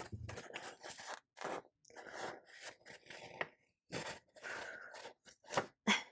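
Paper planner sticker being peeled off a planner page and handled: an irregular string of short paper rustles and scrapes.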